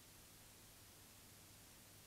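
Near silence: the empty soundtrack's faint steady hiss with a low hum.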